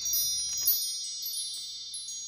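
Wind-chime sound effect: a cluster of high chime tones ringing and slowly dying away, the shimmer that marks a flashback transition.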